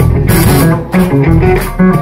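Live blues-rock band playing loudly: electric guitar over bass guitar and drum kit.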